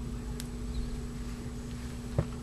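Small scissors snipping fishing line once, a single short sharp click about half a second in, over a steady low hum.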